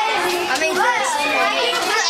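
A group of children talking and calling out at once, many voices overlapping into steady chatter.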